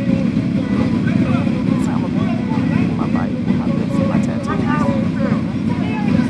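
Several sport motorcycles idling together in a steady, dense rumble, with people talking over it.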